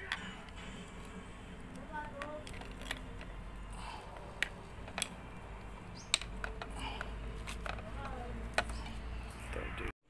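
Scattered sharp clicks and taps of a Proton Savvy's metal wiper linkage being handled as a wiper link is pressed onto its pivot by hand, over a low steady hum and faint background voices.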